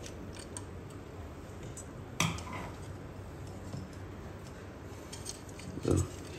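Small metal clicks and scrapes of a screwdriver working a screw in an aluminium 3D-printer heat bed plate, with one sharper clink about two seconds in.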